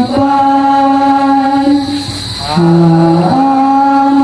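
Voices singing a slow devotional hymn in long, held notes, with a short breath pause about two seconds in before the next phrase.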